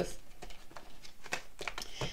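Tarot cards handled on a table as a card is drawn from the deck: a few soft, separate card flicks and rustles.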